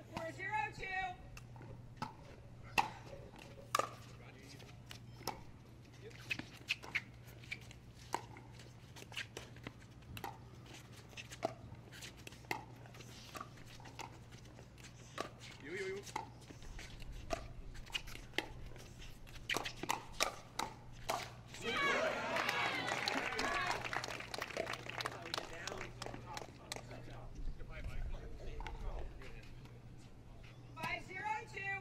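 Pickleball rally: paddles striking the hard plastic ball in a long string of sharp, irregularly spaced pops. About 22 seconds in, as the point ends, a burst of cheering and voices from the crowd lasts a few seconds, with a steady low hum underneath.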